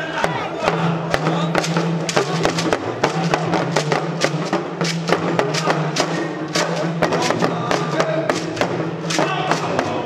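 Yoruba dundun talking drums (hourglass pressure drums) played with curved sticks in a fast, dense rhythm, with a man's voice chanting over a microphone.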